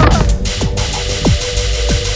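Electronic background music: a steady droning note under a beat of falling-pitch hits repeating about every 0.6 seconds.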